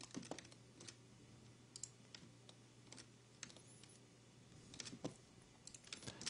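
Faint, irregular clicking of a computer keyboard, a dozen or so scattered taps over near silence.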